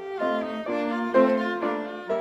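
Violin and piano playing classical chamber music together, the violin carrying a melody of bowed notes that step from one pitch to the next, with a stronger note about a second in.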